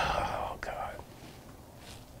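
A man's breathy, whispered vocal sound, fading out within the first second, then quiet room tone with a couple of faint clicks.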